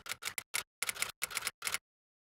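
Typewriter-style keystroke sound effect: a quick, uneven run of about a dozen sharp clicks that stops shortly before the end, timed to text typing itself onto the screen.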